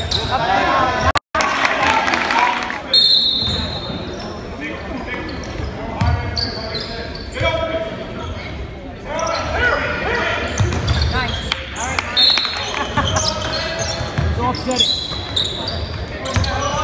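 A basketball bouncing on a hardwood gym floor during a game, amid the voices of players and spectators, all echoing in a large gymnasium. The sound cuts out briefly about a second in.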